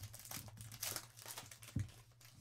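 Foil trading-card pack wrapper crinkling faintly as it is handled and opened and the cards slid out, with one soft low thump near the end.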